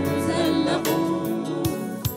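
Church worship choir and a woman lead singer singing a gospel worship song with instrumental accompaniment, holding long notes; a low bass note drops out about two-thirds of the way through.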